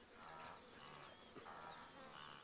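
Faint wildlife ambience: a steady high insect hum with short, bird-like chirps and brief animal calls coming at irregular intervals.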